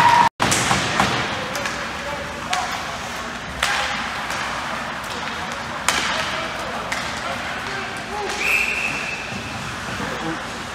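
Ice hockey game heard from the stands: rink echo and crowd voices, with sharp knocks of pucks and sticks against the ice and boards, about five scattered through. The sound cuts out for an instant just after the start, and a short high note sounds about eight and a half seconds in.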